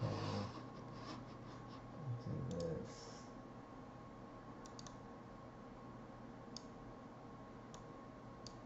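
Sparse single clicks of a computer mouse, a couple of seconds apart, over quiet room tone with a steady faint electrical hum; a short low murmur about two seconds in.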